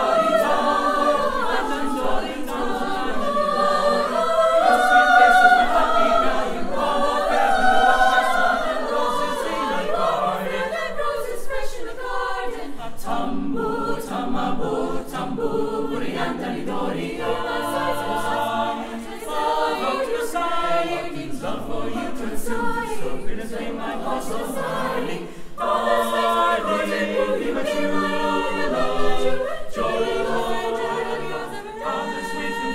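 Mixed choir singing in several parts, sustained chords moving phrase by phrase, with brief breaths between phrases about twelve and twenty-five seconds in.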